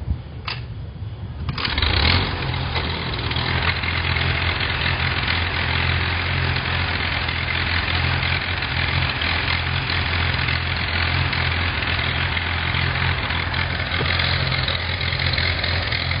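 Farmall A tractor's four-cylinder engine being started with the hand crank: a couple of sharp clicks, then it catches about a second and a half in and settles into a steady idle.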